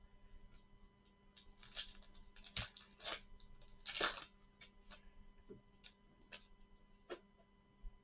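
Foil trading-card pack wrapper torn open and crinkled in several quick rips over about three seconds, the loudest near the middle. A few light clicks follow as cards are handled.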